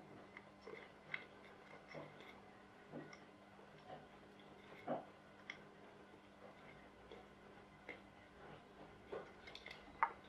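Near silence with faint, irregular light clicks and taps, about one a second, of a plastic bottle being handled while a rubber band is pushed into its neck; the clearest click comes about halfway through.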